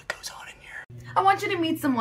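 Speech: a breathy, whispered voice for about the first second, then an abrupt cut to a person talking over a steady low hum.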